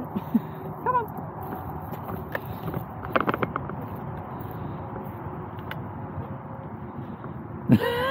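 Wind on the microphone, with a cluster of rattling clicks about three seconds in from a camera-top microphone loose on its hot shoe mount, its screw not done up.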